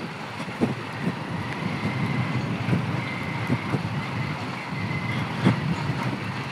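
Hero Splendor single-cylinder four-stroke motorcycle running steadily on a rough dirt road, its engine blending with road and traffic noise, with a few light knocks.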